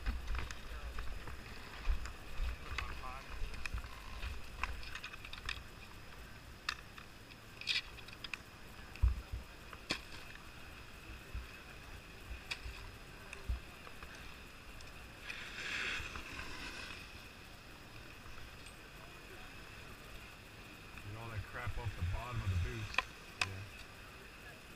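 Skis, ski boots and bindings knocking and clicking on packed snow as skiers step into their bindings, with a scrape of about two seconds near the middle. Wind rumbles on the helmet camera's microphone for the first few seconds, and voices are faintly heard near the end.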